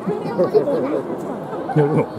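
Several voices talking over one another: spectators chattering in the stands.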